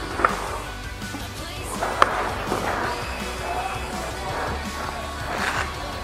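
Background music, with two sharp snaps, one about a quarter second in and one about two seconds in.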